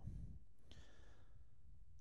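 A man's soft sigh or breath about two-thirds of a second in, over a faint low rumble.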